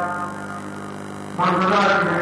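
Steady electrical mains hum through a pause in a man's voice, which resumes about one and a half seconds in.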